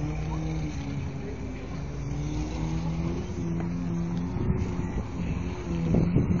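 Off-road 4x4 competition vehicle's engine working over an obstacle course at a distance, its note rising and falling in short held stretches as the driver works the throttle, over a constant low rumble.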